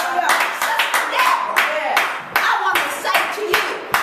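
Hands clapping about three times a second, not quite evenly, under a woman's loud preaching voice.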